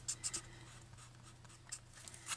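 Faint scratching of an alcohol-marker tip colouring on cardstock, a few small strokes.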